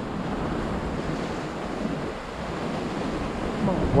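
Ocean surf breaking and washing against a rocky lava shoreline: a steady rushing wash, with wind on the microphone.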